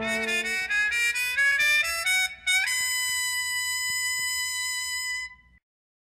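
Jazz band recording ending a piece: a climbing run of high notes rises to one long held final note, which cuts off about five and a half seconds in as the track ends.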